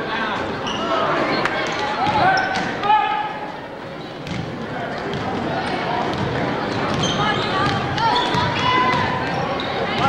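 A basketball being dribbled on a hardwood gym floor during live play, with voices of players and spectators shouting over it.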